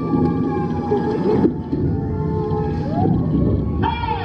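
Dark ride show soundtrack: held musical tones that cut off about a second and a half in, followed by swooping pitch glides that rise and fall, with a low rumble underneath.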